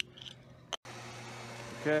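A sharp click, then a moment later a second click and a brief cut-out of all sound, after which a steady machine hum with an even hiss runs on under a spoken "okay" near the end.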